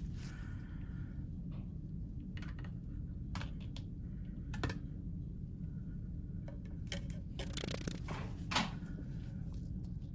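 Scattered clicks, taps and light scrapes of an Xbox Series X's partly disassembled metal chassis and heatsink being handled on a wooden workbench, over a steady low hum. The sharpest knocks come about halfway through and near the end.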